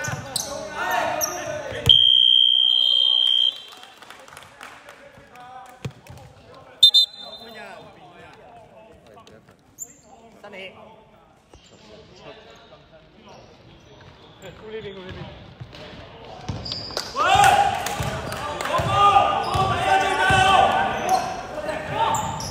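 A steady electronic buzzer sounds for about a second and a half, about two seconds in, marking the shot clock running out. A brief high whistle blast follows near seven seconds. After that a basketball bounces on a hardwood court under quieter players' voices, which rise into loud calling near the end.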